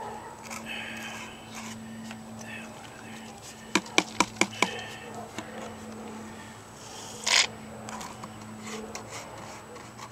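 Plastic snuffer bottle working in a plastic gold pan of water, sucking up fine gold and black sand. There are about five sharp clicks in quick succession around four seconds in and one louder scrape a few seconds later, over a steady low hum.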